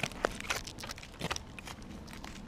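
Aluminium foil crinkling in short, irregular crackles as hands unwrap a foil packet.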